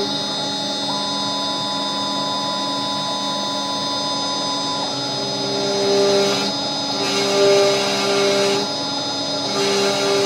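CNC router spindle with an end mill cutting a sheet: a steady machine whine made of several held tones. A higher tone comes in about a second in and stops near the middle, and the cutting noise swells louder several times in the second half.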